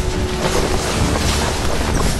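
Film sound effect of loud, continuous rushing and churning water, a mass of water swirling around a figure.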